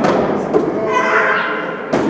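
Thuds that ring out in a large, bare hall: a weaker one about half a second in and a loud one just before the end, with voices between them.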